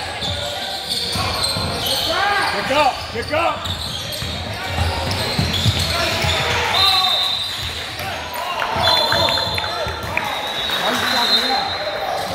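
Indoor basketball game: the ball bouncing on the hardwood court and high sneaker squeaks, under shouting voices from players and spectators echoing through the gym.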